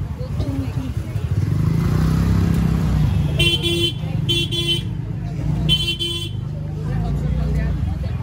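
Scooter and motorcycle engines running close by in slow street traffic, with a vehicle horn honked three times in quick succession around the middle. Crowd chatter runs underneath.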